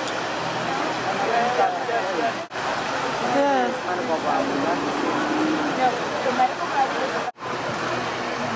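Water from a fountain pouring steadily over the edge of a pool, mixed with the talk of people standing around. The sound cuts out abruptly twice, once about two and a half seconds in and again near the end.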